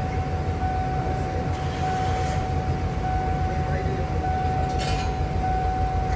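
Car engine idling, a steady low rumble heard from inside the cabin, with a thin steady whine throughout.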